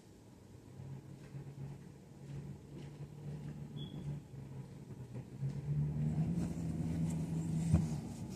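A vehicle's low engine rumble, growing gradually louder as it approaches.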